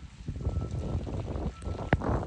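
Wind buffeting the microphone in a low, uneven rumble, with rain falling, and one sharp click near the end.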